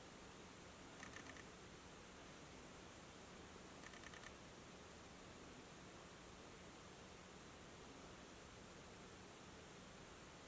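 Near silence: a steady faint room hiss, broken by two faint, brief ticking sounds about a second in and again about four seconds in.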